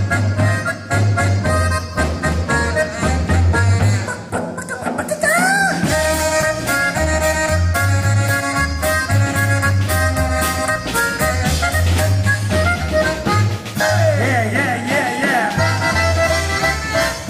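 Polka music from a band, with sustained reed-like melody notes over a steady bass beat and drums. A snare drum and cymbals are struck along with the beat.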